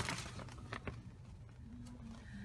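A large paper road map rustling as it is unfolded and handled, starting with a burst of rustling and followed by a few sharp crinkles.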